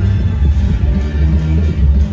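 Loud music with a heavy bass line, playing over a venue sound system.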